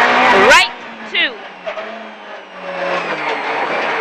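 Suzuki rally car's engine heard inside the cabin, revving hard and then cutting off sharply about half a second in as the driver lifts for a tight right-hand corner. It runs low and quieter through the bend, then the revs build again as the car accelerates out.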